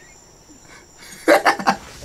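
A man laughing: a short burst of three or four quick, loud pulses starting just over a second in.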